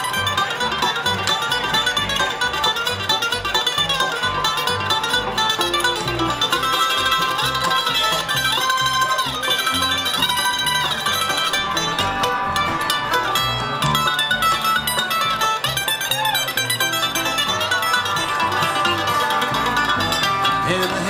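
Live bluegrass band playing an instrumental break: a mandolin takes the lead solo in fast runs over banjo, acoustic guitar and upright bass.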